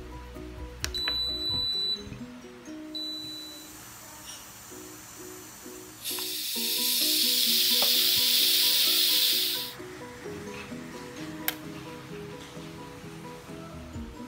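Steam hissing out of the pressure-release valve of a Philips All-in-One electric pressure cooker, turned to vent to let the pressure out after cooking. It starts suddenly about six seconds in and runs steadily for about three and a half seconds before dying away, over background music.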